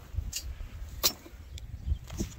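Low rumble of wind and handling on a hand-held phone microphone, with one sharp click about a second in.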